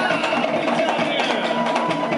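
Live Polynesian dance drumming: fast, steady strikes on wooden slit drums and drums, with voices calling out over the beat.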